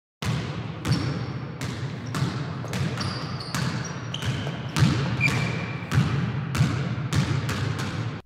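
A basketball dribbled steadily on a hard gym floor, about a bounce and a half per second, each bounce echoing, with a few brief high squeaks between bounces.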